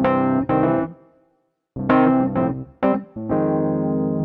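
Sampled Rhodes-style electric piano (EZKeys Electric MK I with its chorus effect) playing the song's outro from a MIDI pattern: a chord dies away to silence about a second in, then several chords are struck near the middle and the last one is held.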